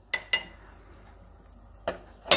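A metal spoon clinks against a small glass jar as water is stirred: two quick ringing clinks near the start and one more just before the end.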